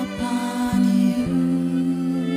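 Slow live worship music from a small band: long held low string notes, changing every half second to a second, under acoustic guitar and violin, with a soft wordless voice between the sung lines.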